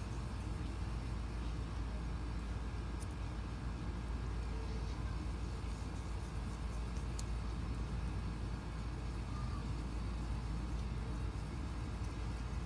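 Steady low background rumble with a light hiss, even throughout, with two faint ticks a few seconds apart.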